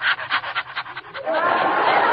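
Studio audience laughing at a joke: a quick, rapid burst of laughter, then broader audience laughter swelling about a second in.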